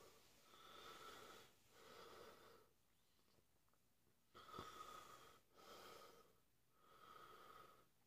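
Faint, heavy mouth breathing: about five slow breaths, each lasting about a second, with a longer pause in the middle. A man is breathing through the burn of a freshly eaten Carolina Reaper pepper.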